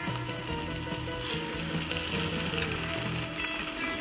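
Drumstick vegetable stir-fry sizzling steadily in a frying pan, with soft background music.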